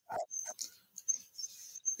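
A pause in a speaker's answer: a brief, soft vocal hesitation sound just after the start, then faint breath and mouth noise.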